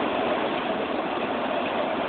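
Heavy rain and gusting wind of a severe thunderstorm, a steady, even rush heard from inside a trailer.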